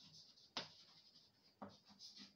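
Chalk scratching and tapping on a blackboard as words are written: faint strokes, with a sharper one about half a second in and another near the end.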